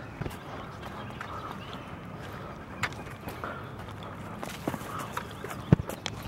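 Footsteps of people walking along a trail, soft and irregular, with one sharp knock just before the end.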